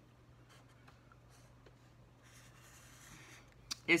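Felt-tip marker drawn faintly across paper, tracing the lines of a box. Short strokes come in the first half and a longer stroke just past the middle, followed by a short click near the end.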